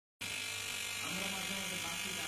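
Steady electrical buzz of a 12 V battery-powered electric fishing shocker running, its electrode pole in the water.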